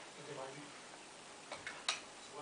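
A young Old English Sheepdog's claws clicking on a wooden parquet floor as it paws at an apple: three sharp clicks near the end, the last the loudest.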